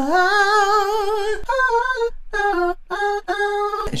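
A solo unaccompanied voice sings a wordless vocal run, the middle harmony line of the part. It opens on a long note with vibrato that slides up, then moves through a run of short stepped notes, broken by two brief pauses.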